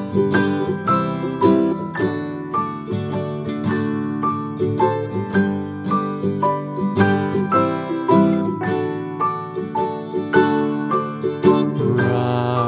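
Background music: a lively tune on plucked string instruments, played as a quick, even run of notes with no pause.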